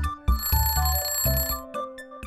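Background music with a bright ringing bell chime that starts about a third of a second in and rings for about a second, sounding as the quiz's countdown timer reaches zero.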